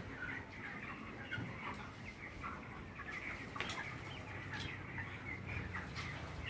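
A large flock of young broiler chickens peeping and chirping, many short calls overlapping without a break, with a couple of sharp clicks in the middle.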